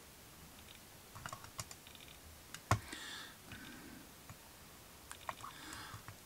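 Faint, scattered small clicks and taps from handling a 1:64 scale diecast model car, with one sharper click a little before the middle.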